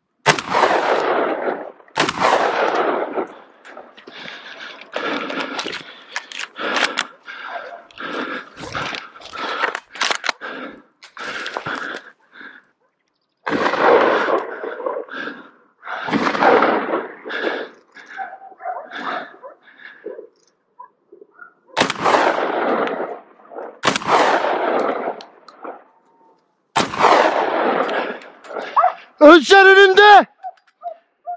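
Repeated gunshots from hunting guns: single shots and quick runs of shots, each trailing off in an echo across the hills. A short, loud pitched cry comes near the end.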